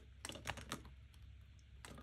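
Pages and plastic envelopes of a ring binder being turned by hand: a few light, faint clicks and rustles in the first second, and another near the end.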